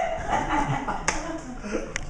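Comedy club audience reacting: a voice at the very start, then two sharp snaps, one about a second in and one near the end, over a low room murmur.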